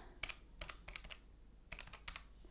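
Plastic keys of a desk calculator being pressed one after another as figures are entered: a string of faint, short clicks.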